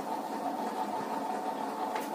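A steady machine hum with an even, unchanging pitch, running throughout with no strokes or breaks.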